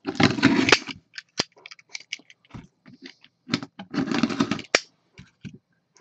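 Plastic shrink wrap being cut and torn off a cardboard box, crinkling in two longer rustles, one right at the start and one about three and a half seconds in, with scattered sharp crackles and clicks between.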